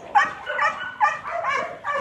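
A dog whining in short, high-pitched yips, about five in quick succession, as it jumps up excitedly at a person.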